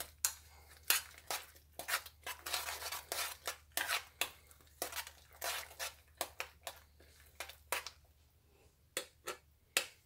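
A spoon stirring a thick coconut-pecan filling in a metal saucepan, scraping and knocking against the pan in quick irregular strokes, about two a second, which thin out near the end.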